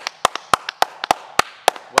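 Hand clapping in a steady rhythm, about three or four claps a second, applauding a finished performance.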